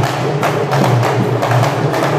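Marawis ensemble of small hand drums struck by hand in an interlocking rhythm, with sharp strokes recurring about twice a second and lighter strokes between them.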